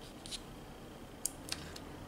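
A few faint, short clicks and scrapes of small gel-polish jars being handled and moved about on a tabletop.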